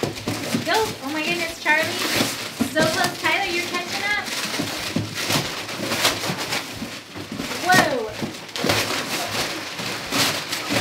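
Brown kraft wrapping paper being torn and ripped off gift boxes in quick, repeated rips and crinkles, with girls' excited voices laughing and squealing over it.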